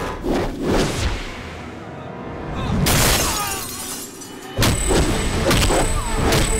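Action-film fight soundtrack: sharp punch and swish effects, then a loud crash about halfway through. Near the end, music with a driving beat and percussive hits comes in.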